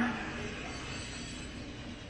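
Steady low rumble with a faint hum: background room noise.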